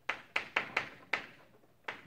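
Chalk striking and scraping on a chalkboard as letters are written: about half a dozen sharp, irregular taps, most in the first second, then a pause and one more tap near the end.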